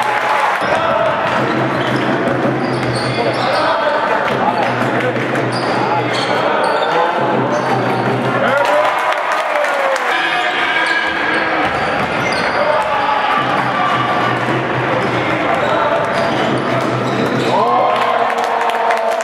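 Basketball bouncing on a hardwood court during play, with many short impacts, under a steady murmur of voices in a large echoing sports hall.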